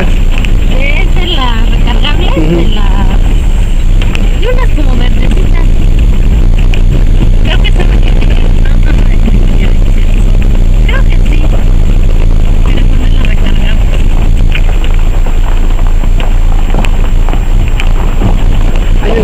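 A vehicle driving along a dirt road, heard from inside the cabin: a loud, steady low rumble of engine and road noise. Voices talk over it in the first few seconds.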